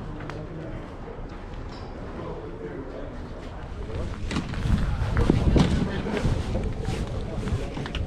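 Murmur of distant voices. From about halfway in, wind rumbles and buffets on the microphone and grows louder.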